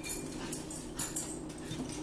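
A spoon and a fork clicking against ceramic bowls, with chewing, over a steady low hum.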